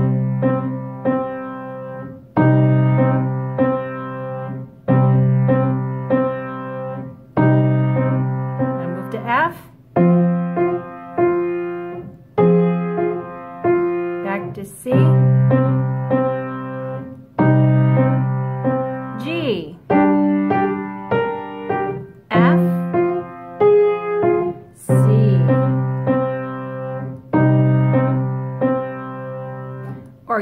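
Kawai piano playing a twelve-bar blues in C, hands together. The left hand strikes a fifth once a measure, about every two and a half seconds, twelve times, moving through the changes C, F, C, G, F, C. A simple right-hand pattern is played over it.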